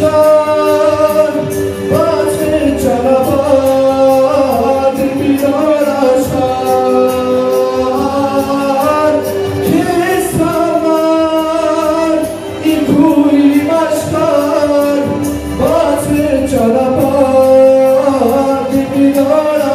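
A man singing a slow, melismatic song into a handheld microphone, amplified, with held notes and ornamented turns over an instrumental accompaniment with a steady beat.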